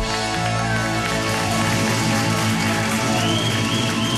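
Live band playing an instrumental passage with sustained notes and plucked strings, the singing having stopped.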